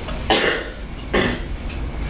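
A person coughing twice, about a second apart, the first cough the louder, over a low steady room rumble.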